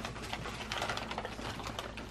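Wrapping paper crinkling and rustling as a wrapped present is handled, a run of faint, irregular crackles.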